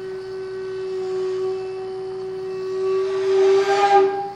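One long held note on a jinashi shakuhachi (Japanese bamboo flute), swelling louder and breathier near the end.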